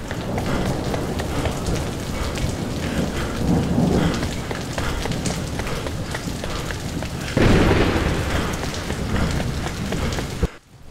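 Heavy rain falling steadily, with low rumbles of thunder and a louder rumble that swells up suddenly about seven and a half seconds in.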